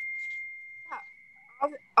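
A single high, steady chime tone ringing out and slowly fading, with a brief faint voice about a second in.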